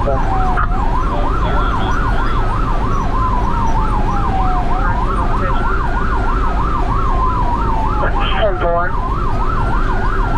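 Ambulance siren on a first-aid squad rig running an emergency response, heard from inside the cab: a slow wail rising and falling about every four seconds together with a fast yelp. Engine and road rumble run underneath. The siren pitch briefly dips down near the end.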